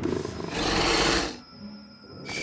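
Cartoon sound effect of a glowing yellow cat-like energy creature snarling: a harsh, noisy snarl lasting about a second and a half, then dying away, over background score.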